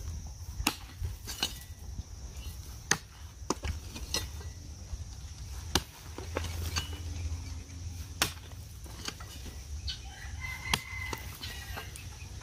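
Hoe blade chopping into dry soil: about a dozen sharp strikes at an uneven pace, roughly one every second or less.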